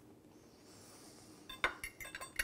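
Quiet, then a few light clinks of a metal knife and fork against a ceramic dinner plate, starting about a second and a half in.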